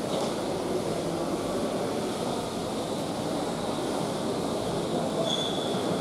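A TransPennine Express Class 185 diesel multiple unit pulling out of the station, giving a steady rumble of engine and wheels on the rails. A brief faint wheel squeal comes near the end.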